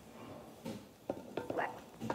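Powdered sugar poured from a clear plastic cup into a mixing bowl: a faint soft hiss, then a few light knocks as the cup is tipped and tapped against the bowl.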